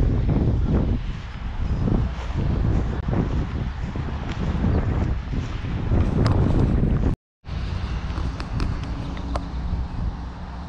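Wind buffeting the microphone in uneven gusts, heaviest in the low end, cutting out abruptly for a moment about seven seconds in and coming back steadier and a little quieter.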